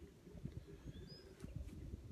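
Faint outdoor ambience: a low, uneven rumble with a short, faint bird chirp about a second in.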